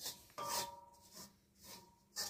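A metal spatula scraping around the inside of a metal wok while stirring garlic and flour. There are about four short scrapes, the loudest about half a second in with a brief metallic ring.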